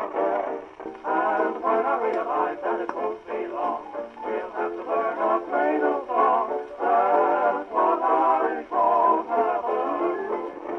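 A 78 rpm shellac record of a singer with accompaniment playing through an acoustic gramophone's horn, thin-toned with no deep bass and little treble. Partway through, the playback switches from a bamboo fibre needle to a steel needle.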